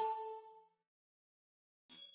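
A bell-like chime rings out and fades within about a second, then a shorter, brighter chime sounds near the end.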